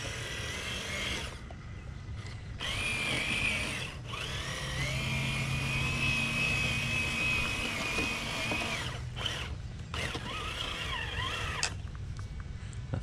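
Traxxas TRX-4 crawler on Traxx tracks driving, its electric motor and single-speed drivetrain whining in several runs with short pauses between. The whine rises in pitch as it speeds up about four seconds in, holds steady, and falls as it slows near nine seconds.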